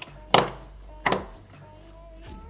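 Wooden puzzle blocks knocking against the wooden tray twice as a piece is pushed down inside, the first knock louder, the two under a second apart.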